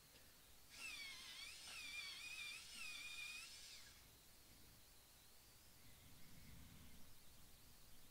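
Colored pencil being turned in a hand-held long-point sharpener: a faint, thin squeak that wavers in pitch for about three seconds, then a quiet low rustle near the end.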